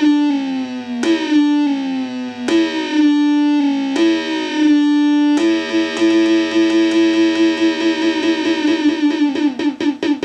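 Synthrotek DS-8 clone analog drum synth triggered from a drum pad, its decay set long so each pitched synth tone rings on into the next: five strikes about a second and a half apart, then a sustained tone with a rapid flutter from about five and a half seconds in.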